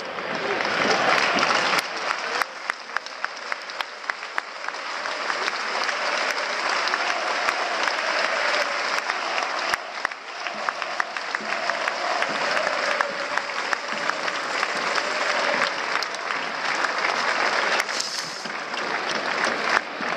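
Football stadium crowd applauding, with sharp claps close by at a steady few per second early on, and voices mixed into the applause.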